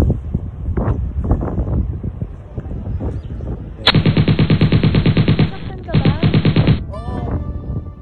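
A loud, rapid rattle of evenly spaced sharp pulses, like machine-gun fire, in two bursts: one of about a second and a half starting about four seconds in, then a shorter one after a brief gap, each starting and stopping abruptly.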